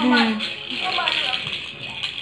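A young child's voice making short wordless sounds, one at the start and another about a second in.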